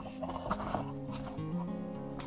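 Background music of held, slowly changing notes, with a couple of light knocks about half a second in as the box's cover panel is handled and lifted off.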